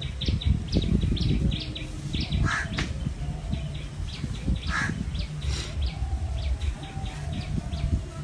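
Small birds chirping outdoors: a quick run of short, high chirps, about four a second, with a few louder calls mixed in, over a steady low rumble.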